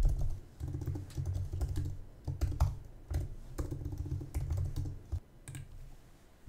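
Typing on a computer keyboard in quick irregular bursts: key clicks with a dull thud beneath them. It thins out to a few last clicks about five seconds in.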